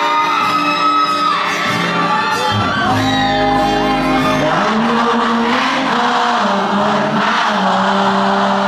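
Live band music in a concert hall: guitar and singing, with the crowd whooping and singing along. Deep low notes come in about two and a half seconds in.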